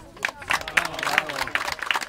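Group applause: many hands clapping quickly and unevenly, starting about a quarter of a second in.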